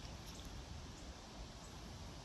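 Faint steady outdoor background noise with a low rumble and a few soft, faint ticks.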